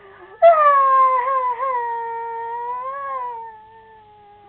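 A long dog-like howl. It starts loud about half a second in and slides slowly down in pitch, swells briefly near three seconds, then carries on more quietly.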